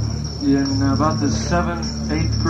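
Between songs on a 1969 rock-concert audience recording: a steady high-pitched whine and a low amplifier drone run throughout. A man's amplified voice, sliding in pitch, comes in about half a second in and again just after the end.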